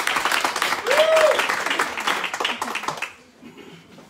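People applauding with steady clapping that dies away about three seconds in. About a second in, a short rising-and-falling call rises over the clapping.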